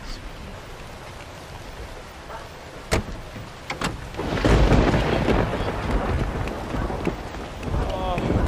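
Steady rain, then two sharp clicks about three seconds in, followed by a long rolling rumble of thunder over the rain, the loudest sound here.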